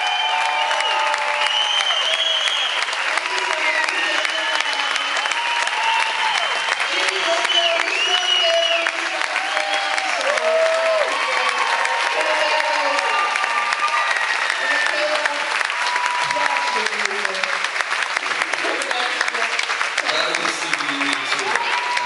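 Concert audience applauding and cheering, steady clapping with scattered shouts and whoops over it, after a song has ended.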